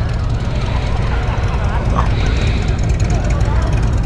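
Steady low rumble and rushing wind noise on a motorcycle rider's microphone while riding.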